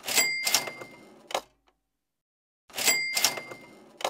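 Cash register 'ka-ching' sound effect, played twice about two and a half seconds apart. Each is a quick rattle of clicks with a ringing bell ding that fades out, followed by a short click.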